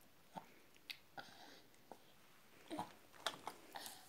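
A toddler chewing slices of pepino melon: faint, wet mouth clicks and lip smacks, coming more often near the end.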